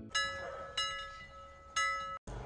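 Synthetic notification-bell chime sound effect: three bright ringing dings, each struck sharply and fading slowly.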